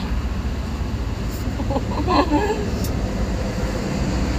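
A few short muffled vocal sounds about two seconds in from a person eating food too hot to hold in the mouth, over a steady low rumble.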